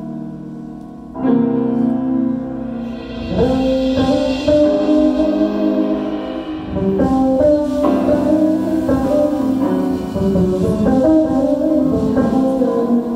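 Jazz ensemble playing live: piano with upright bass, growing louder about a second in, then the fuller band with percussion hits from about three seconds in.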